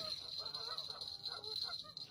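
A run of honking calls over a steady high-pitched drone.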